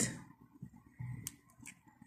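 A few faint, short clicks and light handling noise from a test lead's alligator clip and wires being moved by hand.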